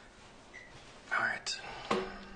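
A man whispering softly under his breath, followed by two sharp clicks near the end.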